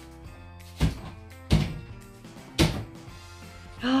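Three sharp knocks of a metal spoon tapping a chocolate hot chocolate bomb in a china mug of hot milk to crack the shell open, over steady background music.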